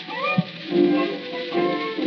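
A remastered 1920 acoustic recording of an early tango orquesta típica playing an instrumental tango, with the band's bandoneón, violin and piano. Several held notes sound together, and a note slides upward just after the start. The sound is dull and lacks treble, as old acoustic recordings do.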